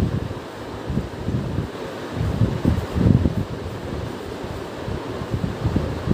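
Moving air buffeting the microphone: a low, uneven rumble that swells and fades, loudest a few seconds in, over a steady hiss.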